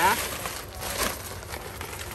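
Vest fabric rustling and crinkling as the vest is handled and turned over, with a couple of light clicks.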